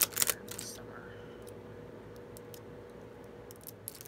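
Cosmetics packaging being handled and opened: a burst of sharp clicks and scraping in the first second, then a few light clicks near the end, over a faint steady hum.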